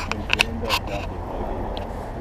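Quiet talk among a group outdoors, with a few sharp clicks in the first second over a steady low rumble.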